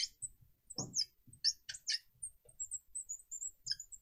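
Marker squeaking on a glass lightboard as it writes, in many short, high-pitched strokes.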